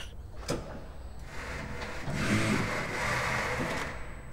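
Reach truck's hydraulics lowering a pallet onto a rack beam: a short click about half a second in, then a steady hiss with a faint low hum from about two seconds in as the forks come down.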